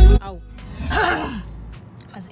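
Loud music cuts off at the start, then a woman lets out one breathy sigh about a second in, rising then falling in pitch, like a satisfied 'ahh' after a drink.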